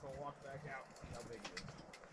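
Faint, distant talking with a few light clicks from a small ice-fishing reel being cranked as a hooked rainbow trout is reeled up the hole.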